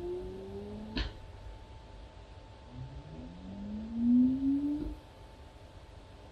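Digital Bird pan-tilt head's tilt motor driving a 3 kg camera rig downward: a rising whine that stops with a click about a second in, then a second rising whine from about three to five seconds in, ending in a softer click. A faint steady high tone runs underneath.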